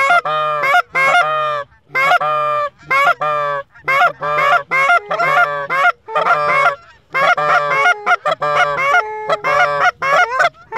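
Loud, rapid goose honking and clucking, one call after another about two or three times a second, with a few short breaks.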